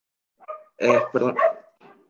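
A dog barking three times in quick succession, after a faint yip.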